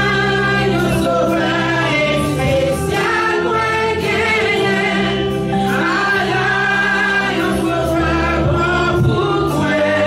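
Gospel praise singing by a group of voices, accompanied by an electric keyboard and guitar. The singing and playing run on continuously at a steady loudness.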